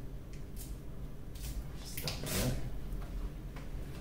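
Soft rustling and handling noises as sheets of rice paper are peeled apart and food is picked up with chopsticks: a few short scratchy scrapes, the loudest about halfway through.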